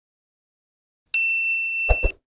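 Notification bell sound effect: a single bright ding about a second in that rings on steadily for about a second. Near the end come two quick clicks in a row, like a mouse double-click.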